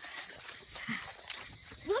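Footsteps walking through grass, soft irregular steps, over a steady high chirring of crickets or other insects.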